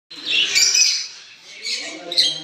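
Lovebirds calling in shrill, high-pitched chatter: a loud run of calls in the first second, then another short burst near the end.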